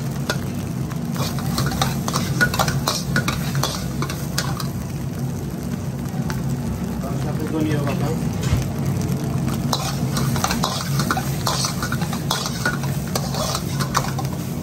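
Metal spatula scraping and clattering against a wok as fried rice is stirred and tossed, with an irregular run of scrapes over the sizzle of the rice frying. A steady low hum runs underneath.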